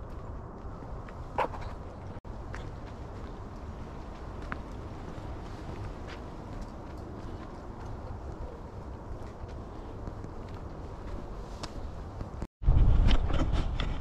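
Outdoor ambience while walking a woodland trail: a steady low rumble with a few scattered light clicks and crunches underfoot. Near the end, after a brief break in the sound, a much louder low rumble takes over.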